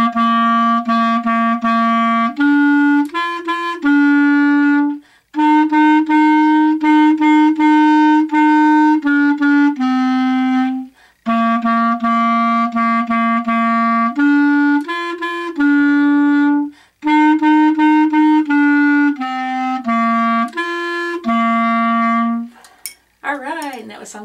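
Solo clarinet playing a simple beginner melody that starts on C, mostly short repeated notes with a few steps up and down, in four phrases with a quick breath between each. The playing stops shortly before the end.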